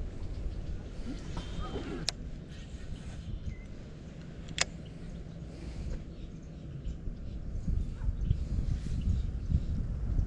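Wind rumbling and buffeting on the microphone, rising near the end, with two sharp clicks about two seconds and four and a half seconds in.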